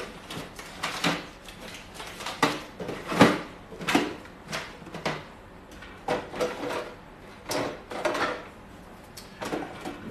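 Paint tubes and tools knocking and clattering as a hand rummages through the trays of a red plastic cantilever toolbox: an irregular run of sharp knocks and rattles, the loudest about three seconds in.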